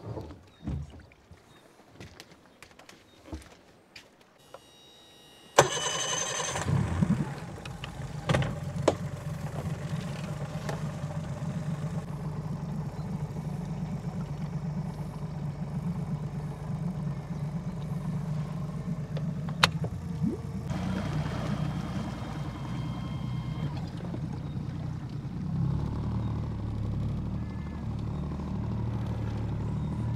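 A few light knocks, then an outboard motor starts suddenly about five seconds in and runs steadily. About twenty seconds in its note changes and gets heavier, as the boat gets under way.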